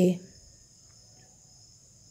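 A steady high-pitched whine or trill in the background, in several close pitches, just after a spoken word ends at the start; faint scratching of a pencil writing on a textbook page.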